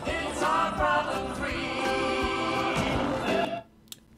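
A song with singing, played as two overlaid copies that have drifted slightly out of sync, giving a hollow, echoey sound, as if sung into a storm drain. The drift is the speed problem of a Bluetooth cassette player's recording. The music cuts off suddenly near the end as playback is stopped.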